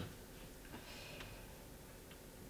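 Quiet room tone in a small room, with a couple of faint small clicks.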